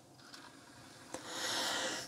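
Panasonic RQ-NX60V cassette player running in play mode, its tape mechanism so quiet that it is barely audible. About a second in comes a single click, followed by a soft rustling hiss as the player is handled.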